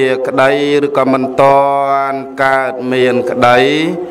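A Buddhist monk chanting a Pali recitation in a steady, even-pitched male voice, holding each syllable, with the pitch rising on the last syllable near the end.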